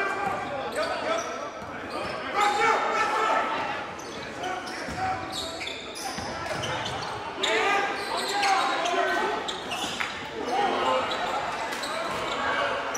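Basketball being dribbled on a hardwood gym floor during a game, with short knocks of the bounces among the voices of players and spectators in the large hall.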